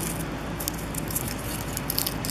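Soft crackling and rustling of loose, crumbly soil as fingers push onion sets into it, with many small scattered crackles.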